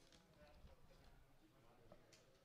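Near silence: faint outdoor ambience with weak, indistinct sounds.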